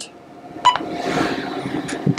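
A single short electronic beep with a click about a third of the way in, from a key press on a Heidenhain Quadra-Chek digital readout, followed by a soft rushing noise and a faint click near the end.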